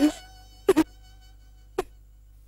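A woman sobbing in short catches a few times over a single held high note of background music that slowly fades.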